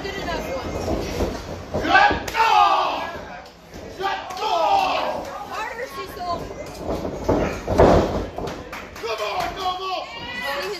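A heavy thud of wrestlers' bodies hitting the wrestling ring mat, loudest about eight seconds in, among people shouting.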